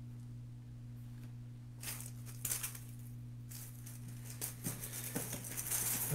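A plastic bag of styrofoam eggs rustling and crinkling in short, irregular bursts as it is handled, over a steady low electrical hum.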